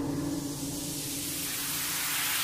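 Electronic bass-music build-up: a white-noise riser slowly swelling in loudness and brightness while the low synth tones beneath it fade away.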